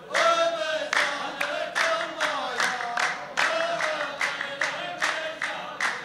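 A row of men singing a line together in unison with steady hand-clapping, a little under three claps a second: the chanting chorus line (saff) of a Saudi sung-poetry exchange (muhawara, tarouq).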